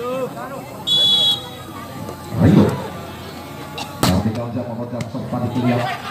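A referee's whistle blown once, briefly, about a second in, to start the point. About four seconds in comes a sharp smack of a volleyball being struck, with a lighter hit a second later as the rally begins.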